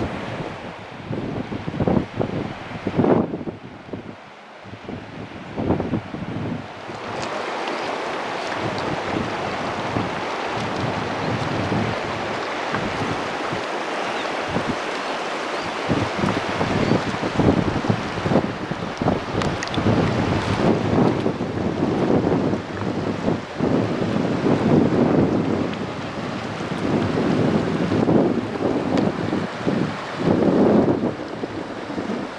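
Wind buffeting the camera microphone: a steady rushing noise with irregular low gusts, gustier in the second half.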